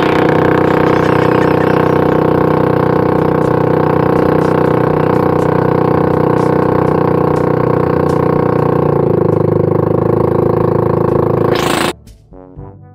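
Small motorboat's engine running steadily under way, loud and close, with a slight change in pitch about nine seconds in. The sound starts and stops abruptly.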